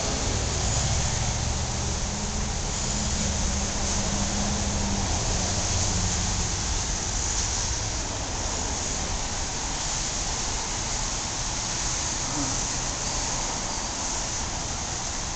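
Steady outdoor street noise: a constant hiss over a low rumble of traffic, with an engine hum for the first few seconds.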